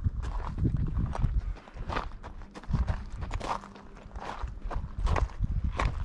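Footsteps crunching on loose lava rock and cinder gravel, uneven steps at a walking pace over a low rumble.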